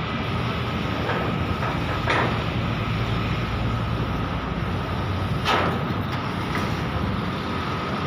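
Construction-site machinery noise: a steady low drone under a broad rumble, with two short louder bursts, one about two seconds in and one about five and a half seconds in.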